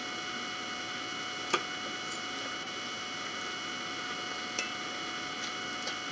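Steady electrical hum and hiss of a quiet room, with a sharp click about a second and a half in and a fainter one later: a fork touching a plastic takeout container.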